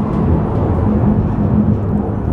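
Cable car cabin running uphill: a steady low rumble with a constant hum.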